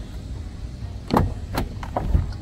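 Lamborghini Aventador SV scissor door pushed down and shut, closing with a loud, solid thump about a second in, followed by a lighter knock.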